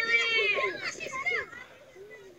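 Excited, high-pitched voices of a group yelling outdoors, fading out near the end.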